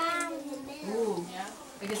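A young child's high-pitched voice making drawn-out sliding sounds: one long, slightly falling sound near the start and a shorter rising-and-falling one about a second in.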